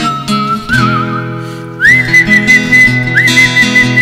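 Acoustic guitar strummed under a whistled melody: a thin, wavering tune that jumps higher about two seconds in and holds there, sliding up once more near the end.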